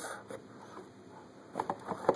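Hand rummaging in a cardboard box of packaged toy cars: faint handling noise, then a few light clicks and rustles of packaging starting about one and a half seconds in.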